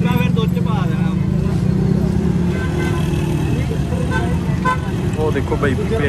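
Street traffic with a motor vehicle engine running steadily close by, giving a low drone, and a vehicle horn sounding briefly about halfway through, under men's voices.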